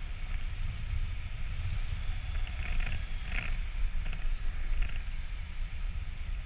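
Wind buffeting the action camera's microphone in flight under a tandem paraglider: a steady, gusting low rumble, with a few short rustles around the middle.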